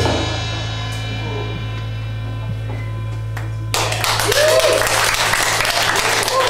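A live rock band's last chord and cymbals ring out and fade over a steady low hum. A little under four seconds in, the audience suddenly breaks into applause with cheering voices, louder than the fading chord.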